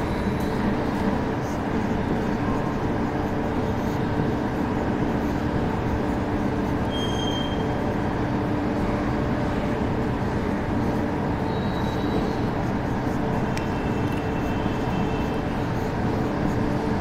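A steady mechanical hum and rumble that does not change, with a few faint, brief high squeaks about halfway through and near the end.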